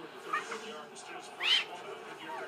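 Goffin's cockatoo giving a short squawk that rises and falls in pitch about a second and a half in, after a couple of fainter brief calls near the start.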